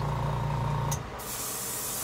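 Airbrush hissing as it sprays paint onto a fishing lure, the hiss starting about a second in. A steady low hum runs under it.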